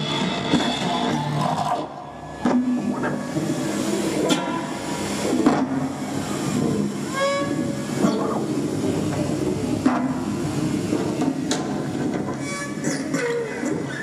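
Live experimental electronic noise music played on tabletop electronics: a dense, droning wash of hiss and rumble with gliding tones and scattered clicks and crackles. It drops back briefly about two seconds in.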